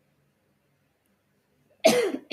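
Near silence, then a woman's cough breaks in suddenly near the end.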